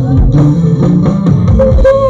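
Live band playing a Bengali romantic song through stage PA speakers: guitar lines over a drum kit with low bass thumps, in a passage without singing.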